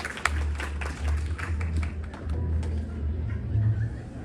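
Audience applause thinning out to a few scattered claps over the first second or two, above a low steady hum.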